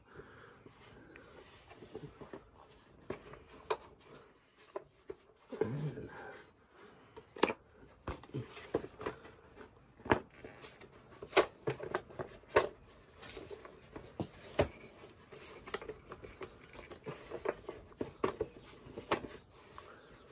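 Hard plastic air cleaner cover being worked onto a Briggs & Stratton V-twin Intek engine by hand: irregular clicks, knocks and scrapes of plastic against the engine as the cover is pushed and fiddled at. It does not want to line up.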